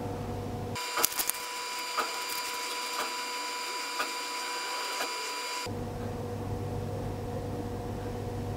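A steady high electronic whine with light ticks about once a second, lasting about five seconds, while the diagnostic tool connects to the body control module.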